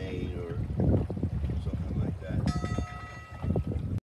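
Water rushing and sloshing along the hull of a small Haven 12½ sailboat under way through choppy water, in uneven surges.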